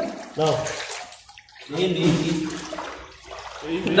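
River water sloshing and splashing around people wading chest-deep, with a man's short vocal exclamation near the start and a drawn-out vocal call about two seconds in.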